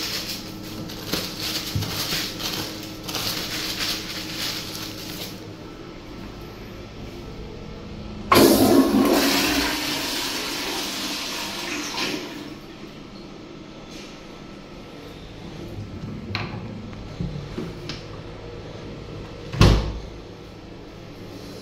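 Paper towel crackling as it is crumpled, then a tank-type toilet flushing: a sudden rush of water about eight seconds in that tapers off into a quieter steady run of water. A sharp thump near the end.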